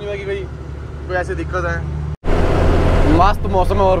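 Goods truck's diesel engine running on the move, a steady low drone in the cab, with short bits of talk over it. A little over two seconds in, the sound cuts out for a moment and comes back as louder engine and road noise.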